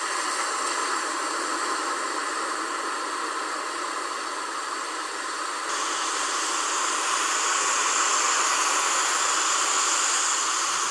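A steady hissing noise that becomes brighter and a little louder about six seconds in.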